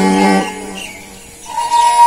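A man singing a folk song holds a note that ends about half a second in. After a short lull, a steady, high sustained instrument note begins about a second and a half in.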